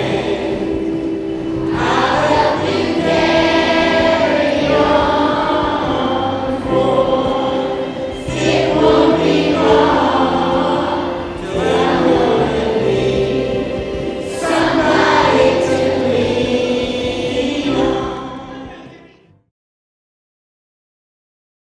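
Choral music: voices singing held notes over a steady low accompaniment, fading out near the end.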